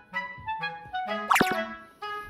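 Light background music in short, bouncy notes with a clarinet-like lead melody. A little over a second in, a quick wobbling pitch glide, a boing-like sound effect, is the loudest moment.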